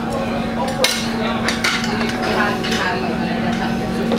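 Restaurant background noise: indistinct voices and dishes and cutlery clinking, with one sharp clink a little under a second in, over a steady low hum.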